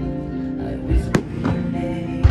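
Aerial firework shells bursting over background music, with a few sharp bangs, the strongest about a second in.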